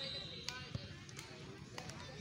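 Faint distant voices with a few short, sharp knocks scattered through the two seconds.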